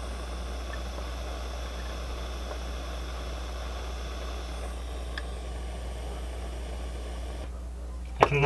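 Steady hiss over a low hum, with a faint tick about five seconds in.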